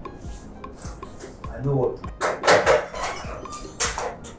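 Clattering and knocking of household objects, loudest in the second half.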